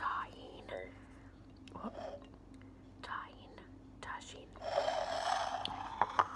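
A woman whispering in short phrases with pauses between them, with a longer whispered phrase near the end.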